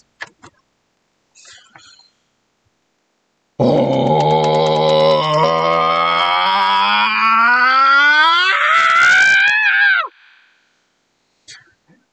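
A man's 'sasquatch call', an anger-voicing exercise: after a quiet start, one long voiced call begins about three and a half seconds in at a low pitch. It slides steadily up over about six seconds to a high cry, which bends down and stops suddenly. The ending comes out sounding more like fear than anger.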